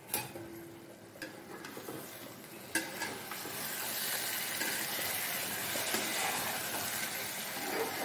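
A spatula stirring thick mushroom mustard curry in a granite-coated kadai, knocking against the pan a few times in the first three seconds, then a steady sizzle from about three seconds in as the thick gravy is spread over the hot pan and fries.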